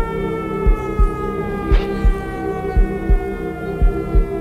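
Electronic intro music over the PA: a slowly falling synth tone over a steady drone, with deep bass thumps in pairs about once a second, like a heartbeat.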